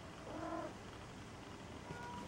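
A Maine Coon cat mewing once, a short call about half a second in.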